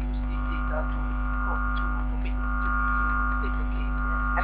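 Steady electrical hum in the recording's audio feed, made of several fixed tones held without change, with faint voices showing beneath it.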